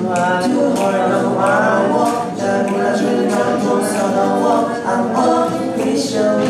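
Singing: a melodic vocal line over a steady held accompaniment underneath.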